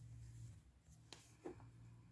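Near silence: a faint steady low hum, with a couple of soft rustles and a click a little past the first second as cotton yarn and a crochet hook are handled.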